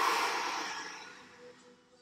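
A man's deep breath out through the mouth, loud at first and fading over about a second and a half, during a slow deep-breathing count. Faint background music underneath.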